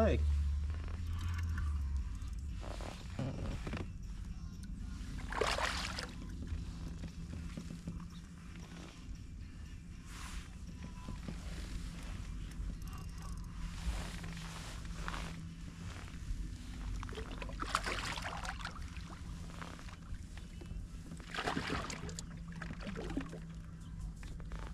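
Water sloshing and splashing around a fishing kayak while a hooked bass is played on rod and line, in short scattered bursts over a steady low hum.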